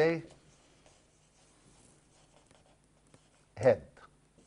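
Marker pen writing on a whiteboard, faint scratchy strokes in the pause between a man's spoken words.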